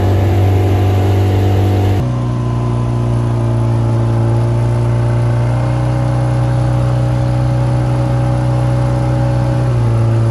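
A boat's motor running steadily, heard from aboard. It holds an even engine tone, which changes abruptly about two seconds in and then stays steady.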